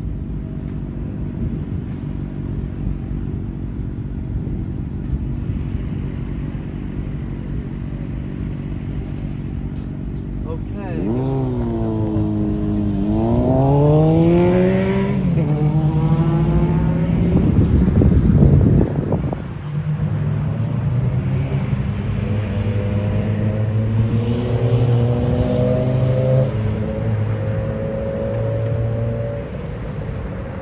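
Street traffic with a steady low rumble, then from about ten seconds in a vehicle engine revs up, its pitch climbing, dropping and climbing again. It is loudest around eighteen seconds, then runs on steadily until near the end.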